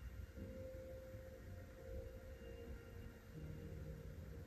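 Faint steady hum with a held tone; a second, lower tone comes in near the end.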